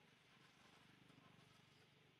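Near silence with a faint steady hiss.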